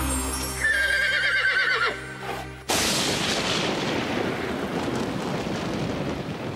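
Theme music ending with a horse's whinny about a second in, a wavering call that falls in pitch. Then a sudden loud wash of noise starts a little under three seconds in and slowly fades.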